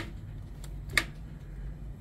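Low steady background hum with a single short click about a second in.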